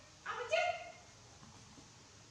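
A young macaque giving two short, high-pitched cries in quick succession in the first second, the second one louder.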